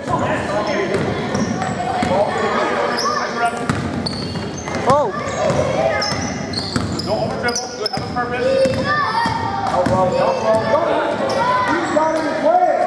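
Basketball dribbled and bouncing on a hardwood gym floor, echoing in a large hall, amid continual shouting and chatter from players and spectators.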